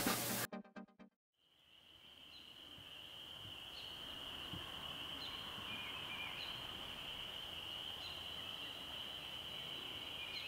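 A steady high-pitched chorus of calling frogs at a woodland pond, with single short chirps standing out about once a second. It fades in after a brief rhythmic sound dies away in the first second and a moment of silence.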